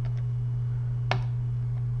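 Steady low hum on the recording, with a single sharp click from a computer mouse about a second in.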